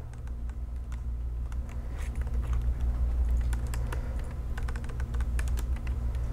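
Computer keyboard being typed on in irregular quick keystrokes as a short line of code is entered, over a steady low hum.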